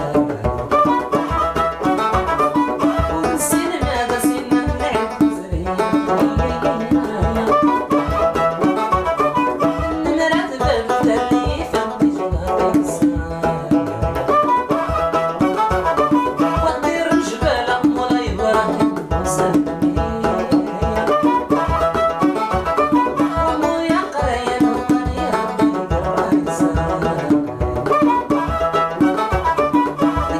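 A Moroccan rways ensemble plays: a bowed ribab and a banjo carry the melody over a steady beat from a hand drum and tapped hands.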